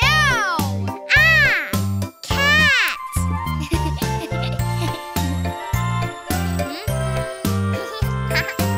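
Three meows, each rising then falling in pitch, over a bouncy children's song with a steady bass beat; after about three seconds the music plays on alone.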